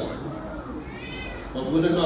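A brief high-pitched wavering call about a second in, rising and then falling in pitch, with a man's speech before and after it.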